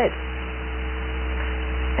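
Steady electrical mains hum with a light hiss and a few faint steady tones above it, growing slightly louder toward the end.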